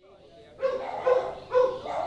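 A dog barking three times, about half a second apart.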